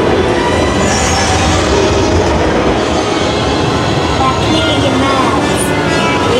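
Haunted-house sound effects: a loud, steady rumbling roar, with voices faintly heard through it.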